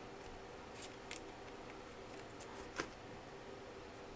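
Faint handling of a stack of Bowman Chrome baseball cards being flipped through by hand, with a few soft clicks as the stiff cards slide and tap against each other, the clearest about a second in and near three seconds.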